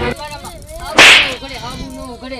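A loud, sharp whip-crack swish about a second in, sudden and dying away within half a second, over faint wavering tones.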